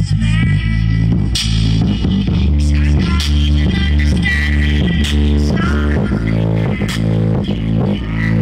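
A car trunk sound system with two large subwoofers and a bank of horn tweeters in a Fiat Uno, playing an electronic sound-test track loud, dominated by deep sustained bass notes with sharp percussion hits above.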